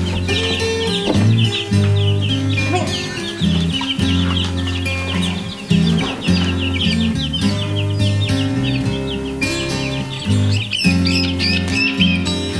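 A brood of baby chicks peeping continuously, many short high chirps that overlap, over background music with steady low notes.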